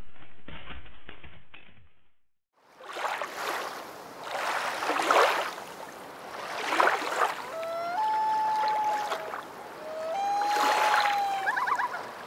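Water washing against a shore in repeated swells, each about a second long. A bird calls twice over it, each call a lower note stepping up to a long held higher note, and there are quick rising chirps near the end.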